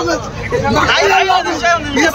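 Speech: a man shouting and wailing, with other voices talking over him.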